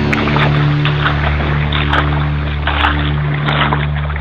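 A vehicle engine drones steadily while it pushes through floodwater, with water splashing and surging against it in irregular rushes.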